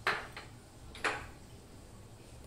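Two short knocks of kitchen bowls, one at the start and one about a second later, with a smaller tap just after the first, as a glass bowl of chopped vegetables is handled over a plastic mixing bowl.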